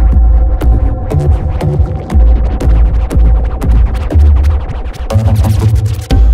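Electronic music track made in the Music Maker JAM app: a heavy, sustained deep bass under regular sharp hi-hat-like ticks and a steady held synth tone. The bass note steps up in pitch about five seconds in.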